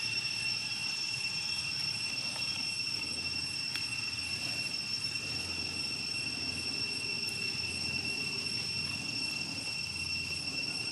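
Steady, unbroken high-pitched insect drone holding two even pitches, over a low continuous rumble.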